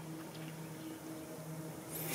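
Quiet pause: faint room tone with a low steady hum.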